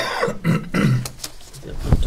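A person's voice making short, gruff, wordless vocal sounds, with a sudden sharp sound near the end.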